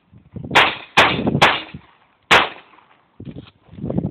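Smith & Wesson 22A .22 LR semi-automatic pistol firing three sharp shots within about two seconds, the first two close together, each trailing off in echo.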